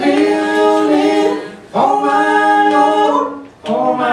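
Men's voices singing a cappella in close bluegrass gospel harmony, two long held chords with a brief break between them; a strummed acoustic guitar comes back in near the end.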